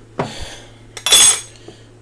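A plastic food container with a snap-on lid being handled on the kitchen counter, with one short, loud scrape-rustle of plastic about a second in.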